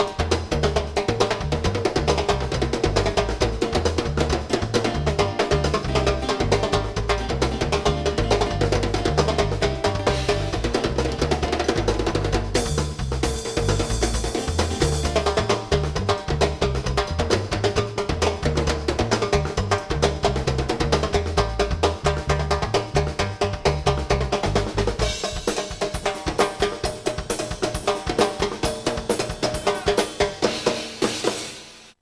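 Latin rock band playing live, led by timbales, cowbell and cymbal struck with sticks over a busy bass guitar line. Near the end the bass line drops out and the percussion carries on.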